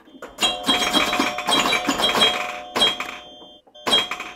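Animated intro sting sound effects: a quick run of clicks and knocks with bell-like ringing tones over them, easing off briefly near the end before another hit.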